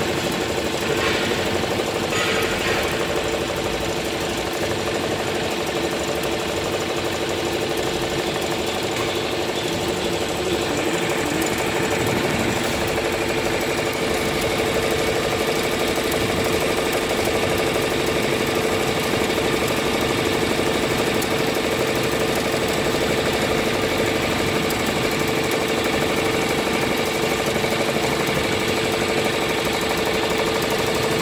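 Richpeace twelve-needle cap embroidery machine running, its needle bar stitching through the cap at a fast, even rate with a steady mechanical hum.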